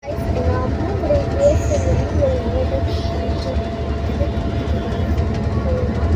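Steady low rumble of an air-conditioned bus under way, heard from inside the passenger cabin, with quieter voices over it.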